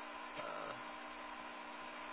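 Steady low hum and hiss of running aquarium equipment, an air pump driving an airstone.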